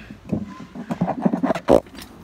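A child's wordless vocal noises in short uneven bursts, with the phone's microphone being jostled, ending in one loud bump near the end.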